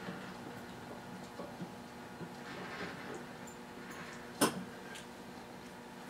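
Quiet room tone with a faint steady hum and a few soft handling noises, broken by one sharp click about four and a half seconds in.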